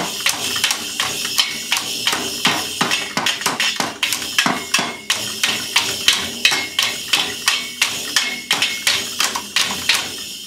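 A toddler banging on a child's toy drum set with sticks: a steady stream of uneven strikes, about three or four a second, on the small drums and on a toy cymbal that keeps ringing.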